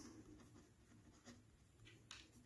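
Faint scratching of a ballpoint pen writing words on paper.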